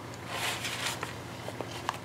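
Waxed linen bookbinding cord pulled through a pierced paper and card signature with a needle, giving a soft rustling hiss in the first second. The paper is handled with a few light clicks near the end.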